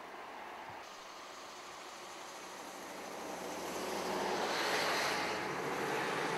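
Rushing floodwater: a steady hiss of running water that swells louder about three to four seconds in and holds there.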